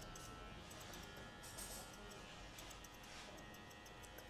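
Faint, irregular clicks of barber's scissors snipping hair over a comb, under quiet background music.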